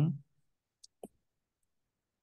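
The last syllable of a voice dies away at the start, then near silence broken by two faint, short clicks about a second in.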